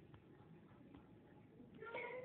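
Near silence with a few faint clicks; near the end a faint, drawn-out high-pitched call begins and carries on.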